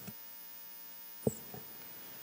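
Faint, steady electrical mains hum in the chamber's microphone and sound system, which stops with a single click a little over a second in.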